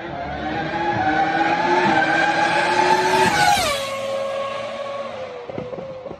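A racing car passing at speed. Its high engine note climbs slightly, drops sharply in pitch about three and a half seconds in as it goes by, then fades away.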